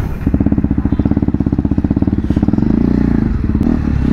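KTM Duke 390 single-cylinder engine running with a rapid, even exhaust beat, starting about a third of a second in; its note changes near the end as the bike moves off.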